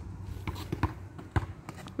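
A basketball bouncing on an outdoor asphalt court: a few sharp, unevenly spaced knocks over a steady low hum.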